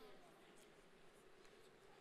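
Near silence: faint steady room hiss with a few very faint ticks.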